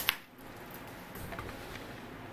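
A sharp click at the very start, then a quiet room with a few faint ticks and rustles as the camera is handled and moved closer.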